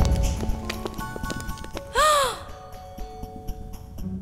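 Background music of an animated cartoon with scattered sound effects, and about two seconds in a short, loud call that rises and then falls in pitch.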